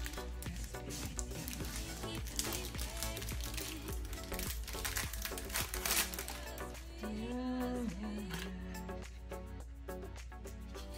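Clear plastic shrink-wrap crinkling and crackling as it is peeled off a cardboard box and crumpled in the hand, loudest about five seconds in. Background music plays throughout.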